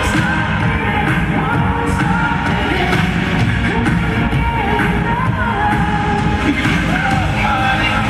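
Loud live dance-pop music with vocals, played over a concert PA and heard from the audience in a large hall.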